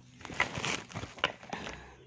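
Rustling and a few sharp clicks as a fabric pencil case and plastic ballpoint pens are handled close to the microphone.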